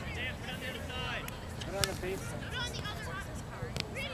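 Voices of spectators and players talking at a distance, too faint to make out words, with a few faint clicks.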